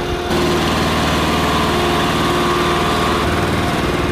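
Small engine of flight-line ground equipment running steadily, with a slight change in its sound about a third of a second in.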